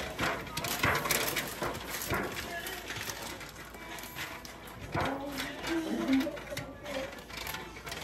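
Thin aluminium foil baking pan crinkling and scraping as it is handled and a pastry brush spreads melted butter around its sides: a run of short crackles and scratches. Low voices can be heard in the background.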